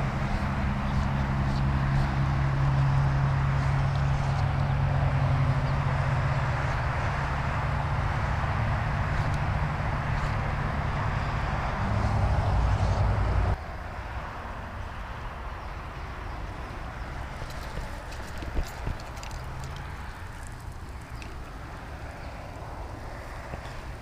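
Steady hiss of lawn sprinklers spraying across a canal bank, with a low steady hum underneath that cuts off abruptly about halfway through, leaving the quieter hiss.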